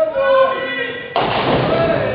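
A bowling ball crashing into ninepins, a sudden noisy clatter a little past halfway that carries on to the end, over chatter in a large hall.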